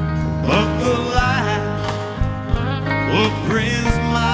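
Live country band performing: a man sings lead with bending, sliding notes over guitar and a steady band accompaniment.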